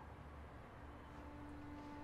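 Near silence: faint room tone, with soft background music beginning to come in near the end as a single held note.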